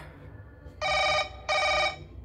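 Two short electronic ringing tones, each about half a second long with a brief gap between, like a double telephone ring.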